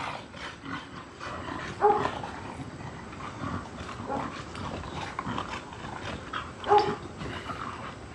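Two dogs play-fighting, giving short yelping calls amid scuffling; the two loudest calls come about two seconds in and near seven seconds.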